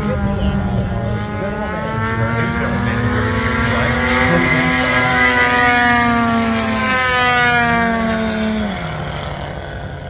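Engines of two large radio-controlled biplanes, 110-inch Muscle Bikes, flying together as two steady engine tones close in pitch. The tones grow louder as the planes pass near, around the middle. Near the end one engine falls in pitch.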